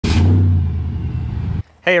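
Hellcat supercharged Hemi V8 of a 1949 Dodge Power Wagon running with a steady low engine note, which cuts off suddenly about a second and a half in.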